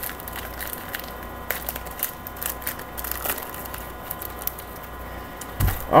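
Crinkling and crackling of a trading card pack's wrapper being torn open and the cards handled, a scatter of small sharp clicks over a steady electrical hum, with a soft thump near the end.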